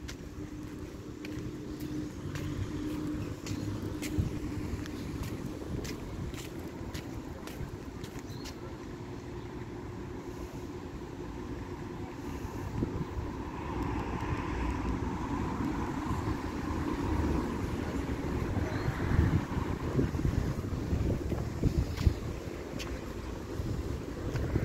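Road traffic on a city street: a steady low rumble, with a vehicle passing that swells and fades about halfway through.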